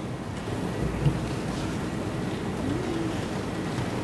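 Steady hiss and low hum of a courtroom microphone feed, with a faint knock about a second in.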